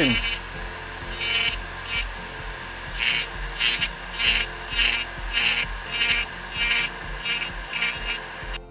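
Small carving burr in a flex-shaft rotary tool grinding into basswood in short repeated strokes, about eleven passes, each a brief rasping hiss, over the tool's steady low hum. The burr is pressed lightly and run in one direction to cut the star's outline.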